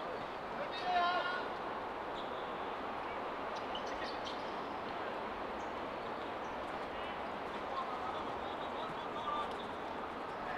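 Soccer players calling out during play: one loud shout about a second in, then a few short, fainter calls over a steady background hiss.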